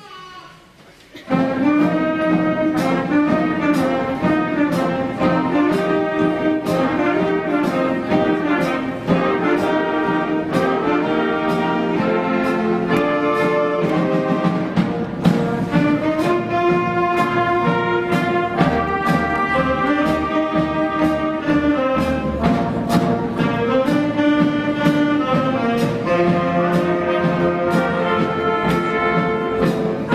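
A school jazz band of saxophones, trumpets and trombones with piano, guitar and drums comes in about a second in and plays on with a steady beat.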